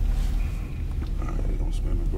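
Car cabin rumble from the engine and road while driving, steady and low, with people talking over it.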